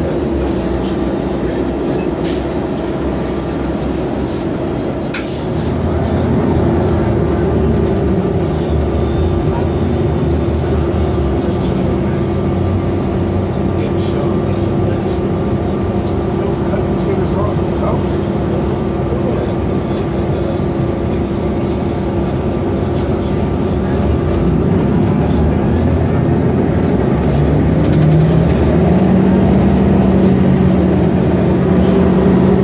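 Cabin sound of a 2002 New Flyer D40LF transit bus under way: its Detroit Diesel Series 50 diesel engine and Allison transmission run with a steady low drone. It gets louder about six seconds in, and the engine pitch rises near the end as the bus picks up speed.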